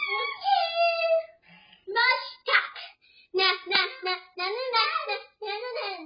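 A young child singing in short, high sing-song phrases without clear words, the pitch sliding up and down, with brief pauses between phrases.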